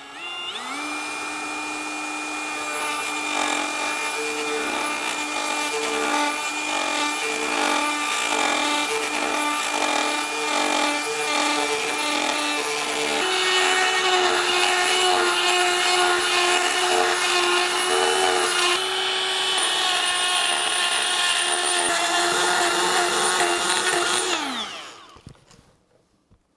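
Cordless die grinder with a carbide burr bit spinning up just after the start, then grinding steadily inside the bore of a clamped steel pipe, thinning the heavy pipe wall to match a thinner Schedule 80 pipe. Its steady whine shifts pitch twice midway and winds down near the end.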